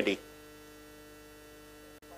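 A man's spoken word ends right at the start, then a faint, steady electrical hum of a few level tones fills the pause.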